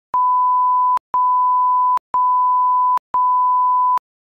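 Countdown-leader beeps: four electronic tone beeps, each a single steady pitch lasting almost a second, one per second, marking the seconds of the countdown.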